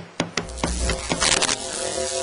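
Electrical crackling and static from a malfunctioning television: three sharp snaps at the start, then a dense crackle with brighter bursts about a second in, under dramatic music.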